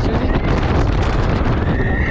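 Air rushing and buffeting over the microphone of a camera riding on the Air One Maxxx thrill ride as it swings through the air. Near the end a rider gives a high, held scream.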